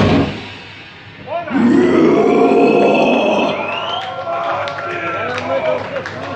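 Heavy metal band music cuts off at the very start. Then, about a second and a half in, a man shouts loudly in a long, drawn-out yell that runs for a few seconds before trailing into quieter voices.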